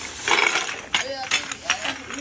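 A black plastic rubbish bag rustling, then several short, sharp clinks of glass perfume bottles being handled and knocked together.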